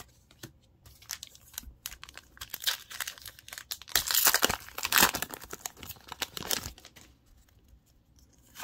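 Foil wrapper of a Pokémon TCG booster pack being torn open and crinkled by hand. A dense crackling that is loudest about halfway through, then thins out near the end.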